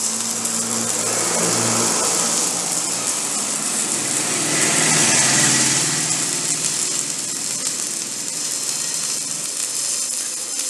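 Stick (manual metal arc) welding: the electrode's arc sizzling and crackling steadily, loudest about halfway through, over a steady low hum.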